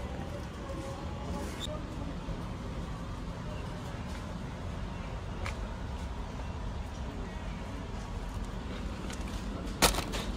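Steady supermarket background noise with a few faint clicks, and a single sharp knock near the end as an item goes into a shopping cart's basket.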